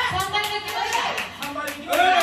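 Hands clapping in a quick, even rhythm, about five claps a second, with people talking over it.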